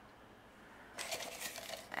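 Paper slips rustling and rattling inside a container as it is stirred or shaken for a prize draw, a quick run of crackly clicks starting about a second in.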